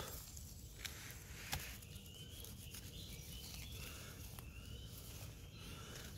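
Quiet woodland sound: small clicks and rubbing in the leaf litter as a blond morel is cut at the stem with a small knife and picked by hand. Faint short bird chirps sound over a low steady rumble.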